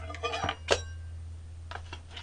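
A few light clinks of a metal ladle against dishes, the sharpest about two-thirds of a second in with a brief ring, over a steady low hum.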